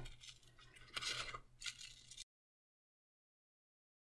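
Scissors cutting through parchment paper covered with painter's tape: faint snips in two short bouts. The sound cuts off to dead silence a little past halfway.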